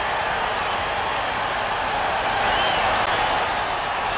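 Steady noise of a large ballpark crowd, an even wash of many voices with no single event standing out.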